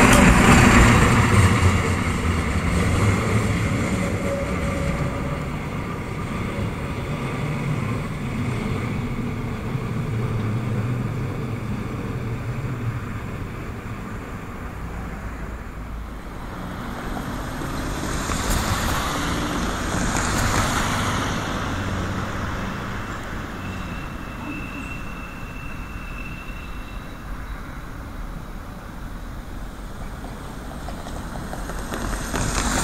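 Regional diesel railcar passing close and pulling away, its engine and running noise fading over the first several seconds. The noise swells again for a few seconds past the middle, and a thin high tone sounds for about three seconds near the end.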